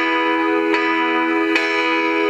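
Music playing on a car's FM radio: sustained, bell-like keyboard chords, with a new chord struck about every eight-tenths of a second and no singing.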